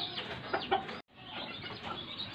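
Chicken clucking faintly a few times; the sound drops out briefly about a second in.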